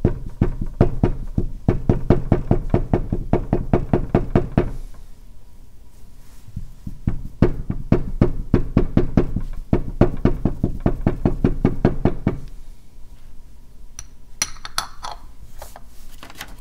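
A carved name seal being dabbed rapidly into a dish of red seal paste to ink it, about five soft knocks a second in two runs of several seconds with a pause between. A few lighter, sharper clicks come near the end.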